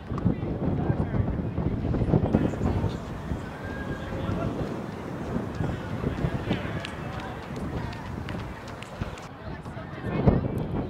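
Indistinct chatter of several people's voices mixed with outdoor background noise, with no single clear speaker.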